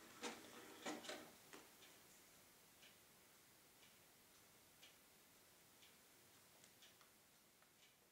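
Fonica CDF-102R compact disc player's mechanism faintly clicking and whirring near the start while its display works through the disc read, then faint single ticks about once a second.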